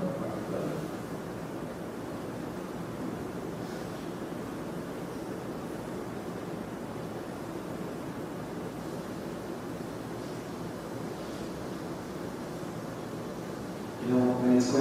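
Steady room noise: an even hiss and rumble with no distinct events.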